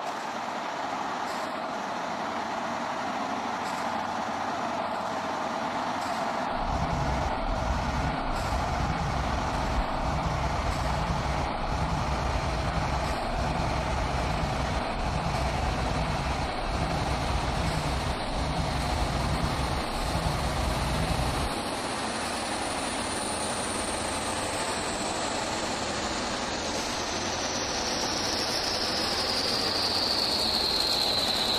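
Electronic music played live on hardware: a dense hissing, droning noise texture with a low pulsing bass that enters about a fifth of the way in and drops out about two-thirds through. Near the end a high tone glides steadily downward.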